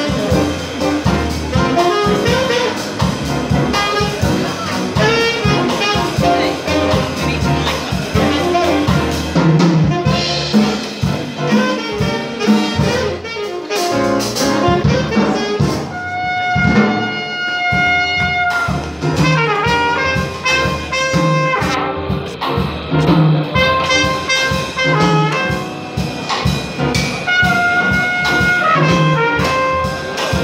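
Live small-group jazz: trumpet lead over an upright double bass. From about halfway the trumpet plays long held notes.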